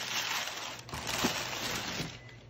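Brown kraft packing paper rustling and crinkling as it is handled in a cardboard box.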